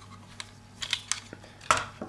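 Handling of a white metal power-supply enclosure as it is turned over: a few light clicks, then a louder knock shortly before the end.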